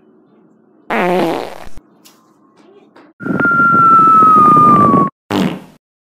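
A loud fart-like sound lasting about two seconds: a rasp with a thin whistling tone over it that slowly falls in pitch. A short voiced squawk comes about a second in, and a brief burst follows the rasp.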